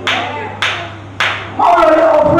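Hand claps in a steady beat, about one every 0.6 s, each ringing briefly in the hall. A voice comes in with long held notes near the end, over a steady low hum from the sound system.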